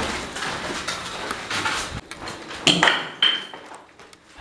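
Low rustling noise, then about three seconds in two sharp metallic clinks half a second apart, the second ringing briefly.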